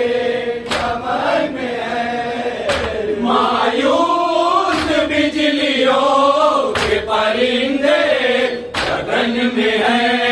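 Men's voices chanting an Urdu salaam in a continuous, slow melodic line, with a sharp beat about every two seconds.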